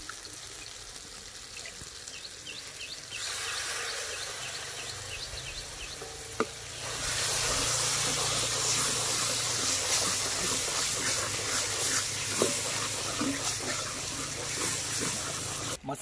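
Onion-tomato masala sizzling in a kadai as it is stirred with a wooden spatula and cooked down until thick. The sizzle grows louder about three seconds in and again, with more hiss, about seven seconds in, with one sharp knock near the middle.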